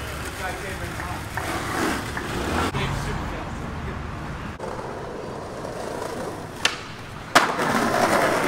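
Outdoor street sound with indistinct voices over a low steady hum, broken by a few sharp clicks. A loud, sudden noise comes in near the end.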